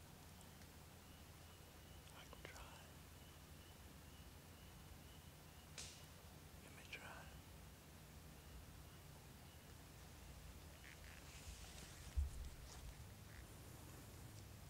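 Near silence in the woods: a few faint clicks and rustles, a faint steady high tone for several seconds, and a soft low thump about twelve seconds in.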